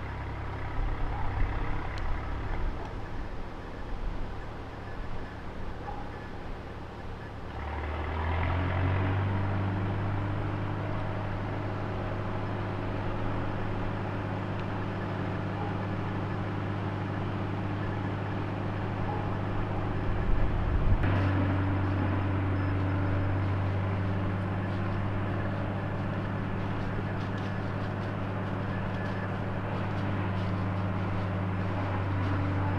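An engine running steadily as a low, even hum that sets in about eight seconds in and holds, with a brief louder swell around two-thirds of the way through.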